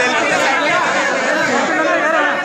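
Crowd chatter: many people talking over one another at once.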